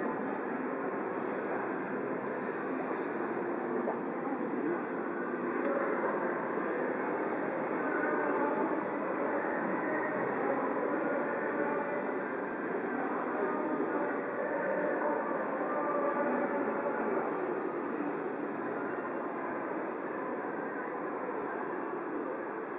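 Steady din of a busy city street crossing: a dense murmur of many voices over a continuous low traffic rumble, with no single event standing out.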